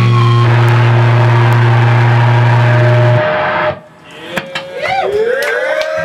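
A sludge metal band's last chord, distorted guitars and bass held as one heavy low note, ringing out and then cutting off about three seconds in. The audience then starts shouting and clapping.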